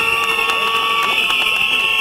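Protest crowd blowing many whistles together in a steady, shrill chorus. A lower steady horn-like tone joins for about the first second and a half.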